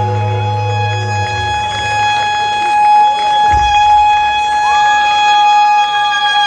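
Live band music in which a saxophone holds one long high note; the bass note underneath stops about a second in, and a second, higher note slides up and joins near the end.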